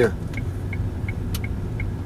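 Car cabin: low engine and road rumble with a steady ticking about three times a second, typical of the turn-signal indicator while the car turns off the road.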